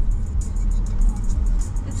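Low, steady road and engine rumble inside a moving car's cabin, under background music with a steady beat of quick high ticks.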